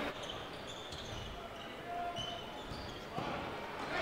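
Basketball game sound in a gym: a crowd murmuring and a ball bouncing on the court, with a few faint, brief high squeaks.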